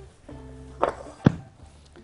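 Bread dough being handled on the kitchen counter over soft background music. There is a short scuffle, then a single sharp knock about a second and a quarter in, the loudest sound.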